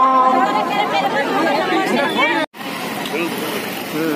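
A voice chanting a Sanskrit verse to Hanuman in long held, wavering notes. About two and a half seconds in, it cuts off abruptly and gives way to outdoor crowd chatter and street noise.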